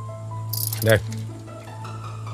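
Soft background music score with held notes over a steady low hum, broken by a brief high, rattling burst about half a second in.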